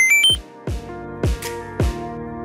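A quick electronic jingle of beeping tones stepping up and down in pitch at the start, a video-game-style power-up sound effect. It is followed by background music with a steady beat of about two hits a second.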